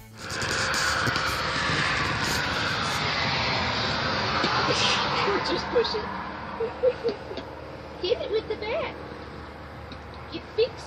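A vehicle going by on a nearby road, a rushing noise that slides lower in pitch and fades out about halfway through. After that come several short, high little voice sounds from a toddler.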